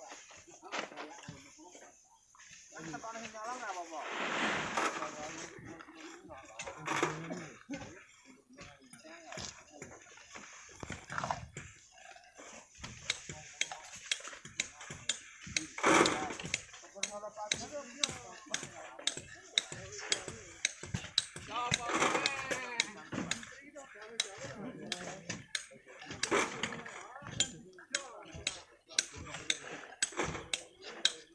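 Repeated sharp knocks and clinks of stone, coming about twice a second in the second half, as long bamboo poles are jabbed and levered at a cliff face of volcanic sand and rock to bring down loose stone. Men's voices call out now and then.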